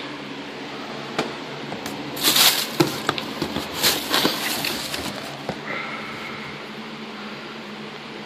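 Packaging being handled: rustling, crinkling and light knocks of cardboard-and-plastic action-figure boxes and the wrapping in a shipping carton, in irregular clusters, busiest in the first half. A faint steady high whine joins a low room hum near the end.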